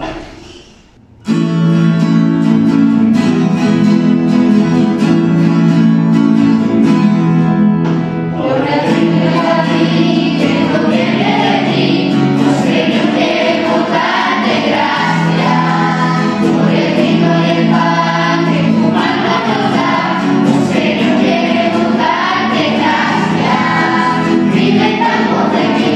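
Acoustic guitars strum the introduction of a Spanish communion hymn, starting about a second in, and a children's choir joins in singing about eight seconds in.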